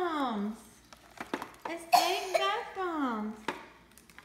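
Two long, high-pitched vocal exclamations without words, each sliding down in pitch, one at the start and one from about two seconds in. A few light clicks and taps of toy packaging being handled fall between them.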